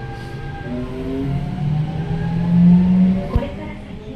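Seibu 6000-series train's Hitachi GTO VVVF inverter and traction motors whining under power, several tones rising in pitch and shifting, loudest just before three seconds in, then cutting off with a sharp click.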